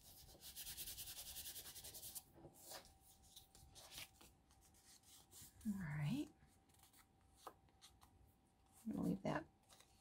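Fingers rubbing quickly back and forth over a small paper piece: a fast run of dry, scratchy strokes for about two seconds near the start, followed by faint paper handling.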